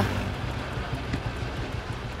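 Busy street traffic noise: an even hiss over a low rumble of motorbike and vehicle engines, with a few faint ticks.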